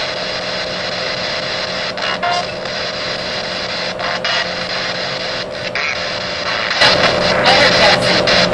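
Ghost box radio scanning through stations: steady static hiss with a hum, broken by short clicks and gaps as it jumps between channels. It grows louder and busier near the end.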